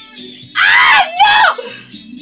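A woman's two loud, high-pitched screams of excitement, the first about half a second in and a shorter one just after, with the pitch swooping down and back up, over faint pop music from the screen.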